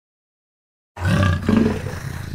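Black panther's loud, deep growling roar, starting abruptly about a second in after silence.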